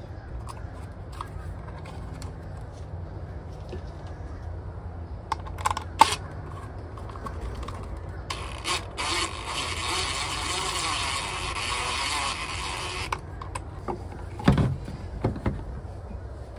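Cordless drill/driver running for about five seconds midway, driving a screw into a plastic electrical box. Sharp clicks and knocks of the screw and box being handled come before and after.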